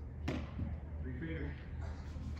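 A baseball tossed in a catching drill smacks once into the catcher's mitt or gear, a single sharp hit about a quarter second in, over a steady low hum.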